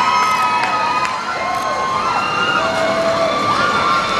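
Crowd of fans cheering and shouting, with many high voices calling out over one another.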